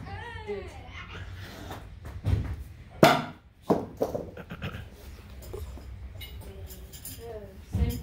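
A thrown object hitting a wooden target with a sharp knock about three seconds in, followed by a second, softer knock a moment later.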